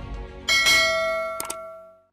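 Bell-like chime of a logo end-card jingle: a bright strike about half a second in, over a low rumble, ringing on and fading away, with a second, lighter strike shortly before it dies out.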